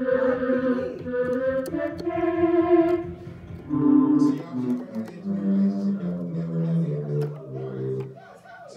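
Electronic keyboard playing a slow line of held notes, the later ones lower in pitch.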